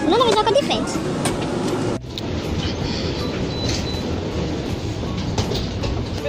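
A brief vocal sound over aircraft cabin noise, then an abrupt cut to a steady rushing rumble: the background noise of an airport jet bridge at a parked airliner.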